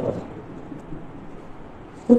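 Steady background noise of a room, an even low hiss and rumble with no distinct events, in a pause between speech.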